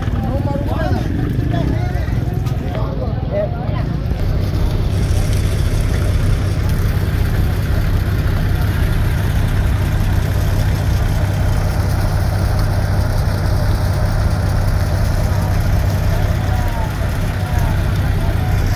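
An engine running steadily at idle, a continuous low hum, with a crowd talking over it in the first few seconds.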